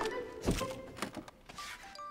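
Cartoon sound effects of a small creature scrambling up onto a wooden throne: a few soft thunks, the first and loudest about half a second in, over light background music.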